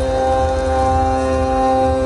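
Two piano accordions holding a sustained chord, the notes steady with no singing, over a low rumble.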